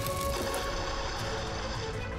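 Dramatic background music, with a rush of noise starting about a third of a second in as water splashes onto a burning wood fire in a metal fire pit.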